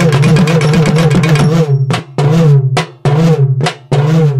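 Urumi drum music: loud drum phrases with a wavering, bending pitch, breaking off in brief pauses about once a second in the second half.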